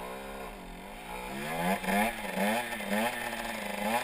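Motorcycle engine revving: the revs dip and climb back, then run into a string of quick throttle blips, each a short rise and fall in pitch, as the rider holds the front wheel up in a wheelie.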